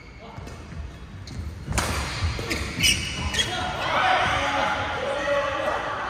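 Badminton rally: sharp smacks of rackets hitting the shuttlecock, three of them close together near the middle, with squeaks of court shoes on the sports floor, ringing in a large hall.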